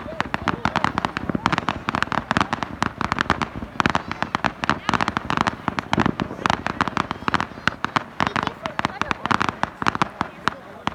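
Fireworks crackling: a dense, rapid string of sharp pops, many each second, from green glittering star bursts.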